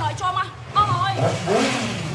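Yamaha R6 sport bike's inline-four engine running, revved once about a second in, its pitch rising quickly.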